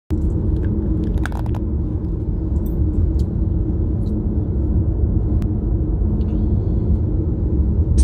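Steady low rumble of road and engine noise inside a moving car's cabin. A few faint clicks come through, a small cluster of them about a second and a half in.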